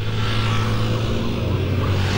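A nearby motor vehicle running with a steady low hum that drops slightly in pitch about three-quarters of the way through, over wind and road noise from riding along in traffic.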